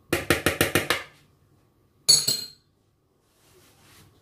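A metal spoon tapped rapidly against the rim of a mixing bowl, about seven quick knocks in a second, shaking off butter. About two seconds in, a single ringing clink as the spoon is set down.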